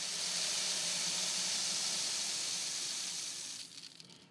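Hard red spring wheat pouring in a steady stream from a plastic bucket into a galvanized-steel model bin, a continuous hiss of kernels that tapers off near the end as the pour finishes.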